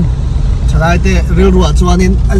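Steady low engine and road rumble inside a moving car's cabin, under a man's voice that pauses briefly after the start and picks up again.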